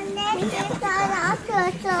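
Small children and adults chattering, several high voices talking at once.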